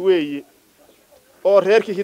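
A man's voice speaking in short phrases, with a pause of about a second in the middle.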